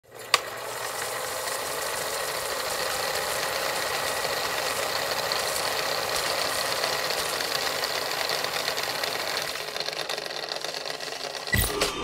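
Film projector sound effect: a steady mechanical whirring clatter, with a sharp click right at the start and a short, loud low thump near the end.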